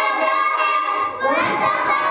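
A group of children singing a song together, holding long notes, with a brief break and more ragged voices about a second in.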